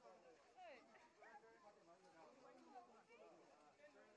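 Faint crowd chatter: several voices talking at once, with no single speaker standing out.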